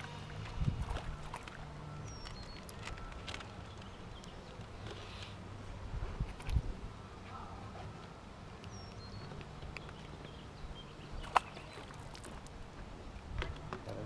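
Handling noise in an aluminum fishing boat: scattered clicks and light knocks while a caught panfish is unhooked, over a low hum that comes and goes, with one sharp click near the end.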